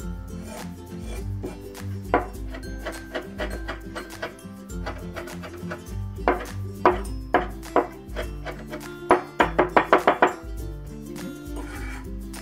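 Chinese cleaver chopping Thai chili peppers on a wooden cutting board: scattered knocks of the blade on the board, then a quick run of about eight chops near the end, over background music.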